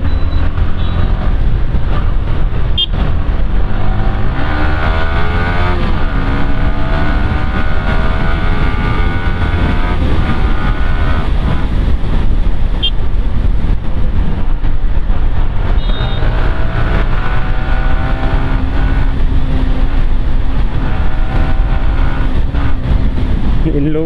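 Yamaha sport bike engine running under way in traffic, its note rising as it accelerates about four seconds in and again past the middle, holding steady between.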